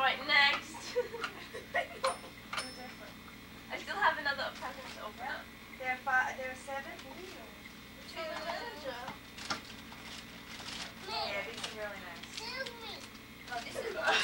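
Indistinct chatter of children and adults talking, with a few short, sharp clicks or knocks among the voices.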